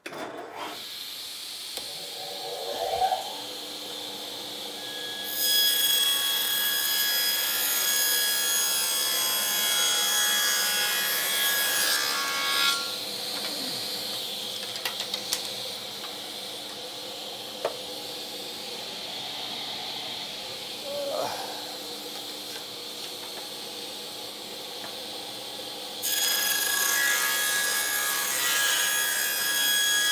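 Table saw starting and running steadily, then ripping a board of cedar about five seconds in for some seven seconds. It runs free for a while, and near the end it is cutting again as the stock is fed through with a push block.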